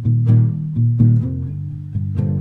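Nylon-string classical guitar playing an instrumental passage without singing. A plucked note or chord sounds about every third of a second over low bass notes that ring on.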